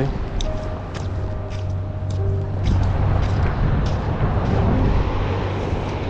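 Wind rumbling on the microphone on an open beach, with faint background music holding a few long notes.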